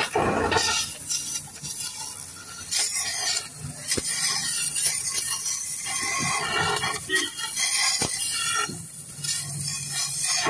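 Gas cutting torch burning into the steel baffles inside a Yamaha RX135 silencer: a rough hiss that surges and fades, with two sharp ticks about four and eight seconds in.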